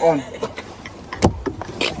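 Brief laughter in a car cabin, then the low rumble of the car interior with two short knocks, about a second and just under two seconds in.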